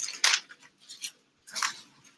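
Paper pages rustling as a book is leafed through: three short crisp rustles, the loudest just after the start.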